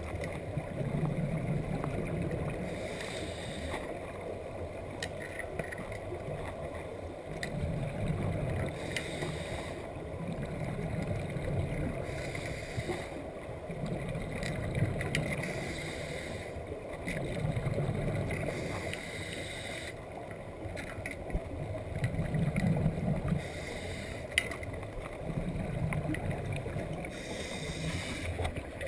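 Scuba diver breathing through a regulator underwater: a hiss on each inhale alternating with a low bubbling rumble of exhaled bubbles, in a slow rhythm of a breath every few seconds.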